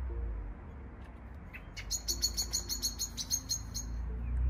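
Common blackbird calling at dusk: a few faint notes, then from about two seconds in a fast, even series of sharp, high chink notes, about six a second.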